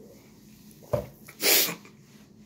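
A man finishing a swig from a bottle: a short low thump about a second in, then a loud, breathy exhale after drinking.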